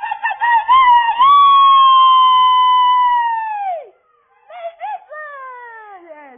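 A loud, high-pitched howl: a wavering start, then one long note held for about two and a half seconds that bends down and cuts off about four seconds in. It is followed by two shorter howls that slide down in pitch.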